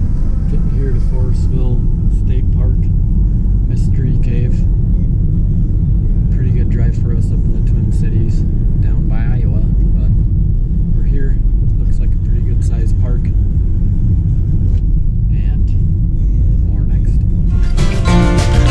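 Steady low road and engine rumble inside a moving car's cabin, with a man's voice faint beneath it.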